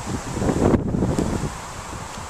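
Wind buffeting the camera's microphone, a low rumbling gust that swells in the middle and eases off after about a second and a half.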